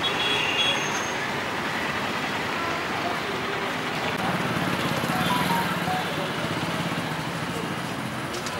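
Fuel dispenser running as petrol flows from its nozzle into a metal measuring can, a steady rushing noise, during a calibration check of the pump's delivered volume.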